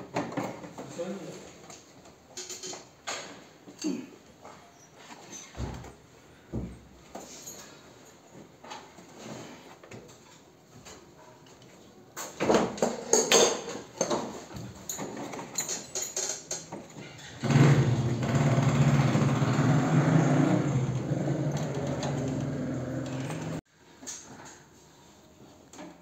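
Scattered knocks, clicks and rattles of hands working the copper pipes and wiring behind a split AC indoor unit, with a louder run of knocks about halfway through. About three-quarters of the way in, a steady low-pitched drone starts, runs for about six seconds and cuts off suddenly.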